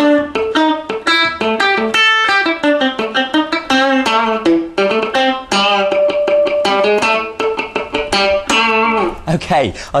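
Electric guitar playing a funky improvised rhythm, clean single notes mixed with muted dead-note clicks, picked quickly down and up.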